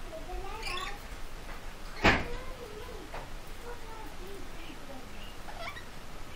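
Rainbow lorikeet making short wavering calls and chirps, with one sharp knock about two seconds in.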